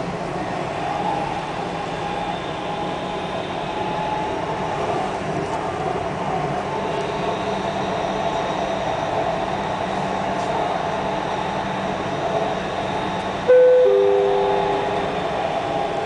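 Dubai Metro train running steadily along the track, heard inside the front carriage as an even rumble with a faint held whine. About two seconds before the end, the onboard chime sounds two notes stepping down in pitch, the signal that a next-station announcement follows; it is the loudest sound here.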